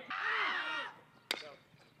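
A baseball bat hitting a pitched ball: one sharp crack about a second and a quarter in. It comes after a loud drawn-out yell from a spectator or player.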